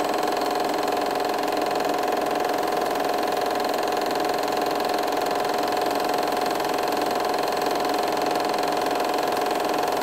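A small machine running steadily, with a constant mid-pitched hum that does not change.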